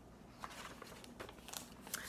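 Faint paper rustling with a few light clicks as a picture book is opened from its cover to the title page.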